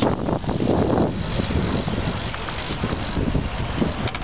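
Wind rushing over the microphone of a camera carried on a moving bicycle, mixed with the rolling noise of bicycles riding in a group along the road.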